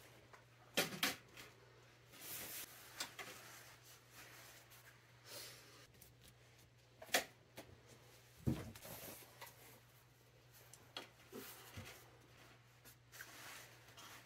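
Jackets being hung on plastic coat hangers on a curtain rod: soft rustling of coat fabric with a few sharp clicks and knocks of hangers against the rod, at irregular moments.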